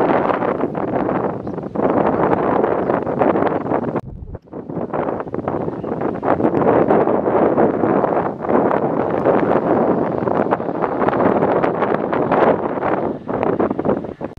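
Wind buffeting the camera microphone, a loud gusting rush that drops away briefly about four seconds in.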